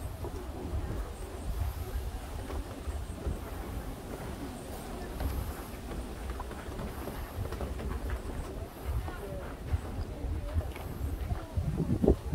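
Background chatter of many visitors walking about, with footsteps and a steady low rumble on the microphone.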